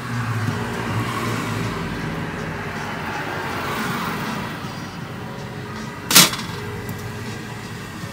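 Steady low mechanical hum and hiss of running machinery, with one sharp click about six seconds in.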